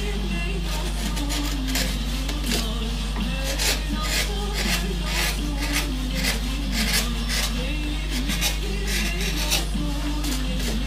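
Background music with a wavering melody over a steady drone, and a hand carving gouge cutting into wood: short scraping strokes, irregular, about one a second.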